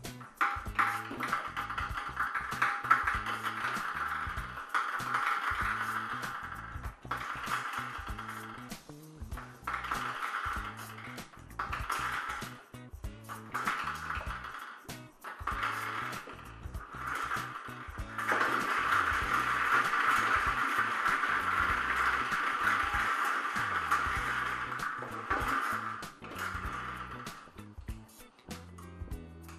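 Plastic numbered balls clicking and rattling against a plastic lottery drum in irregular spells as they are handled. In the second half comes a longer, steadier rattle of the balls tumbling inside as the hand-cranked drum is turned.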